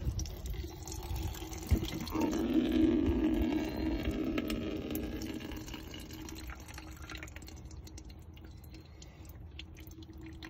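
Oil, fuel and water condensate from the PCV system draining out of a UPR dual-valve oil catch can in a thin stream into a plastic pitcher. It is a steady trickle into liquid that grows fainter over the second half.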